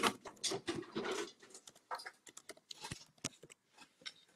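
Computer keyboard typing: a quick, irregular run of faint key clicks.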